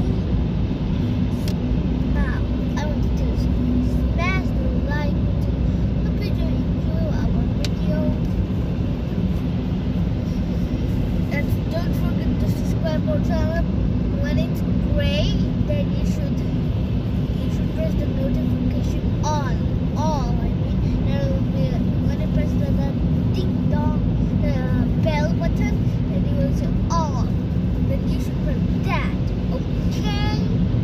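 Steady low rumble of a car on the move, heard from inside the cabin. Voices come and go over it.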